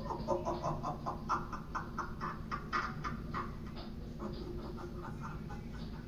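Horror sound effect from the Demonic Dahlia animatronic's promo soundtrack, heard through a TV speaker: a rapid, stuttering run of short raspy croaks, a few a second, that thins out after about four seconds.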